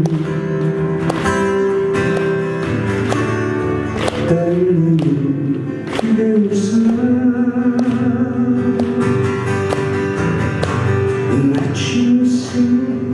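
A man singing into a microphone while playing acoustic guitar, holding long notes over the plucked strings.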